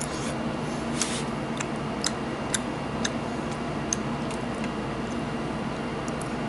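A person eating with a metal fork: several sharp, irregularly spaced clicks of the fork, mostly in the first few seconds, over a steady low hum.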